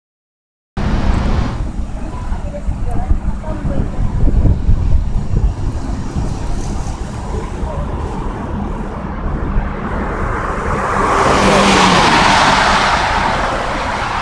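Road noise of a moving car, with an uneven low rumble that starts abruptly just under a second in. A louder rushing hiss swells about eleven seconds in and then eases off.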